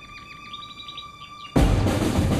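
Dramatic soundtrack music: a soft held tone with short fluttering, chirp-like high figures, broken about one and a half seconds in by a loud, low drum hit.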